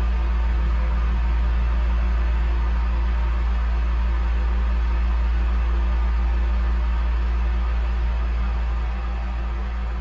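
Electric fan running: a steady, unchanging low hum and whir that dips slightly in level near the end.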